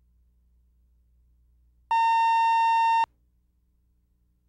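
A single steady electronic beep at one fixed pitch, about a second long, that starts and stops abruptly about two seconds in: a videotape line-up test tone on black between programmes.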